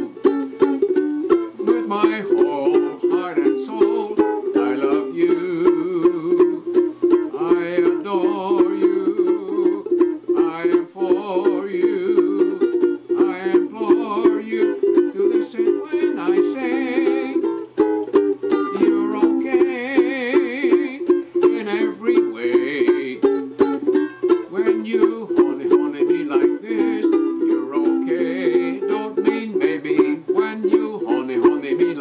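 Ukulele strummed in a quick, even rhythm, playing the chords of a song.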